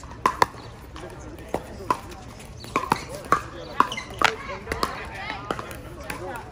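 Pickleball paddles striking a hard plastic ball in a rally: a quick run of sharp, hollow pops, roughly one every half second. Voices are heard behind them.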